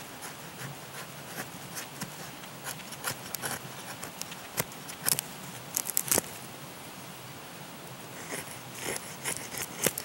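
A knife blade scraping and cutting at a dry tinder bundle in short, irregular strokes, with a louder run of strokes about five to six seconds in.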